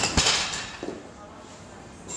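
A single clunk of a gym machine's weight stack being let down at the end of a set, then quiet room sound.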